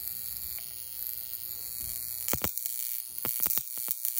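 Violet wand with a glass vacuum electrode running with a steady high-pitched hiss. From about halfway in come irregular sharp crackles, several a second, as sparks jump from the electrode to the chip implant it is touching.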